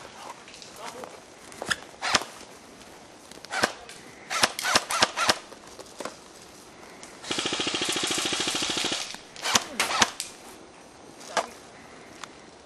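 Airsoft guns firing: scattered single shots and a quick string of about six, then a full-auto burst of about a second and a half a little past halfway, a fast, even buzz of shots. A few more single shots follow.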